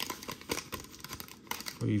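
Foil trading-card pack wrapper crinkling as it is opened and the cards are slid out: a scatter of small rustles and clicks.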